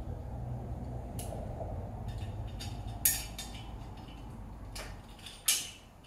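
Light metallic clicks and clinks of an aluminum cabinet-hardware jig being handled as its stop is fitted back onto the rule. The clicks are scattered, and the two sharpest come about halfway through and near the end.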